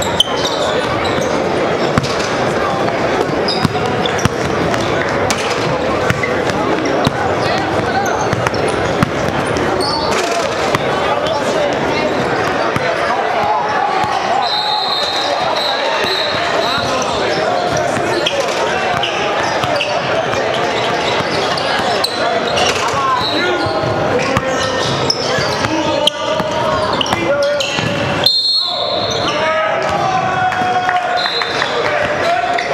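Live basketball game sound in a large gym: a ball bouncing on the hardwood floor among sharp knocks and brief high squeaks, under steady chatter of players and spectators echoing in the hall.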